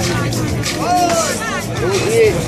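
Voices of a crowd of spectators, with a few raised calls, over background music playing steadily.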